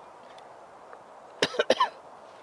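A man coughing in a quick run of about three short coughs, about a second and a half in, from campfire smoke.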